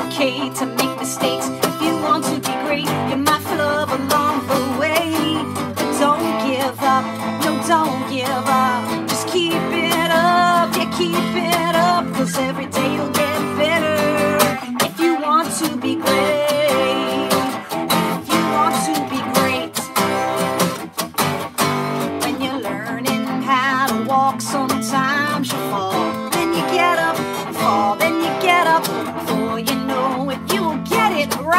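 Live children's song with a strummed acoustic guitar and an electric guitar playing together under a woman's singing voice.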